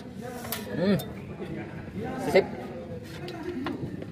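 A few light metallic clicks and clinks from the steel shoes and springs of a rear drum brake assembly being handled by hand, alongside a man's short spoken remarks.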